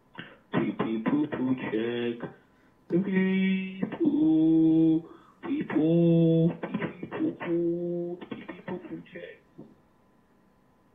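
A voicemail recording played back, a single voice with a narrow, telephone-like sound, partly sung or chanted in long held notes between shorter spoken phrases.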